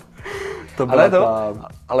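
Men laughing: a breathy, gasping intake of air, then a voiced laugh lasting under a second.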